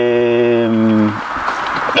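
A man's voice holding a long hesitation vowel, 'ehhh', at one steady pitch, which stops a little over a second in. A short hiss follows.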